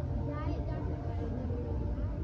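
Indistinct voices of people talking nearby, no words made out, over a steady low rumble. About half a second in, a short high rising voice-like sound breaks through.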